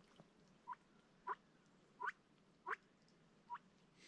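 Ducks calling: five short, rising calls about two-thirds of a second apart.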